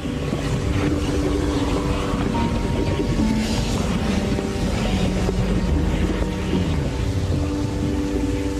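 Steady rushing noise with a deep rumble: the sound effect of the fire-engulfed asteroid passing close to the sun. Sustained orchestral score plays over it.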